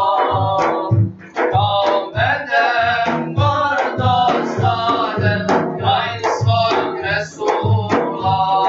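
Male voices singing an ilahija, a devotional hymn, over large frame drums beating a steady rhythm of about two strokes a second.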